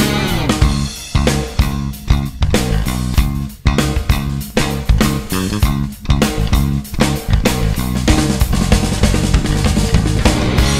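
Hard rock band playing an instrumental intro: drum kit, with bass drum and snare hits, punches out stop-start accents together with electric guitar and bass. In the last couple of seconds the band settles into a steady, continuous groove.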